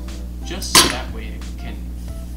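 A pair of scissors set down on a cutting board: a single sharp clack about three-quarters of a second in.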